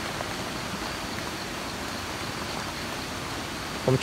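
Steady, even hiss of outdoor background noise with a faint, thin high tone running through it.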